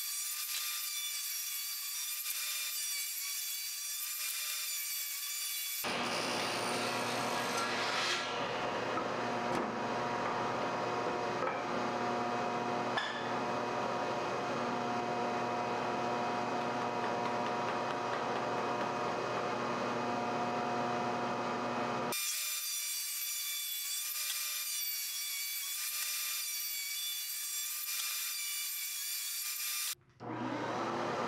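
Table saw running and ripping the rounded edges off 2x4 lumber, the blade cutting steadily through the wood over a constant motor hum. For roughly the first six and the last eight seconds the sound is thin, with no low end.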